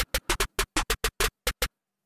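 A snare-clap drum sample in FL Studio triggered about a dozen times in quick, uneven succession from the phone's on-screen piano keys, each hit short and sharp. The hits stop shortly before the end.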